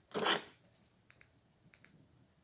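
A short rustling scrape just after the start, then a few faint clicks.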